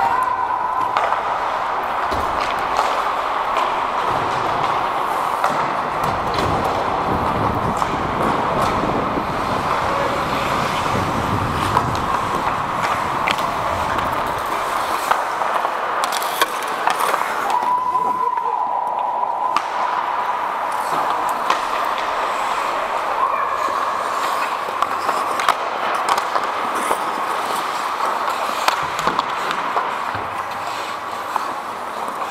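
Ice hockey play heard from a skating referee's helmet camera: skate blades scraping the ice, with frequent short clicks of sticks and puck, over steady movement noise on the microphone.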